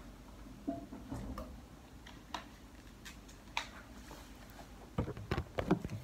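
A man drinking from a plastic water bottle: a few scattered light clicks and crinkles of the bottle. About five seconds in, a quick run of louder knocks and rubbing as the phone that is recording is picked up and handled.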